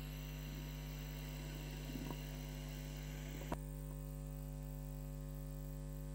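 Steady low electrical mains hum, with a single click about three and a half seconds in.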